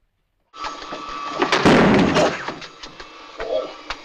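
Woodshop power machinery starts about half a second in and runs with a steady whine. A loud, harsh burst of noise with several sharp knocks comes about a second and a half to two seconds in, then the machinery runs on more quietly.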